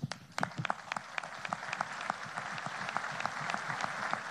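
Audience applauding at the end of a speaker's answer: separate claps at first, quickly filling in to steady applause.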